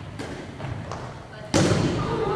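Basketball thumps echoing in a gymnasium: a light one shortly after the start and a loud one about one and a half seconds in.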